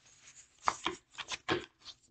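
A deck of oracle cards being shuffled by hand: a quick run of about six short card-on-card slaps and rustles, starting just under a second in.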